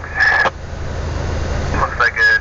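Log truck's engine running with a steady low rumble. A short voice-like sound comes about a quarter second in.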